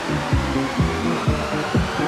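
House music from a club DJ mix: a four-on-the-floor kick drum at about two beats a second, with a hissing white-noise sweep laid over the beat.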